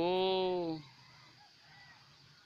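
A man's voice holding one long drawn-out vowel, its pitch arching gently, ending a little under a second in.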